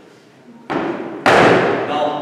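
Two heavy thumps, a lighter one about two thirds of a second in and a much louder one about half a second later, each dying away slowly with a long ring-out.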